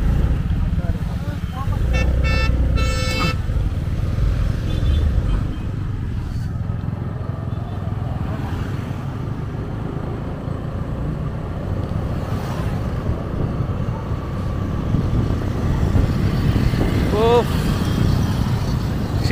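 Steady engine and road rumble of a motorcycle ride, with wind on the microphone. About two seconds in, a vehicle horn sounds in a few short toots.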